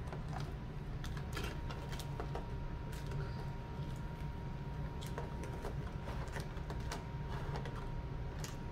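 Foil Pokémon booster packs being handled: light, irregular taps and crinkles as they are picked up and set down in a clear plastic tray, over a steady low hum.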